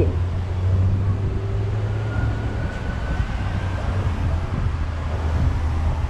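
Steady low rumble of street traffic on an urban avenue.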